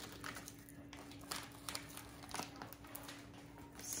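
Faint crinkling and rustling of a plastic zip-top bag being handled and pulled open, a few scattered crackles over a faint steady hum.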